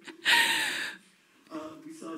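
A woman's short, breathy laugh: one sharp, airy gasp about half a second long. After a brief hush, soft murmured voice sounds follow.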